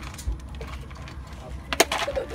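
A sharp crack near the end as a zebra bites the plastic feed bucket and cracks it, over a low steady rumble.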